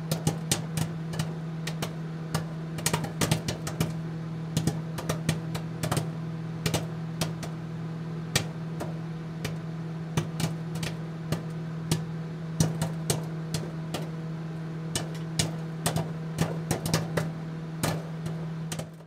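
Old-TV static sound effect: a steady low electrical hum with irregular crackling clicks scattered throughout.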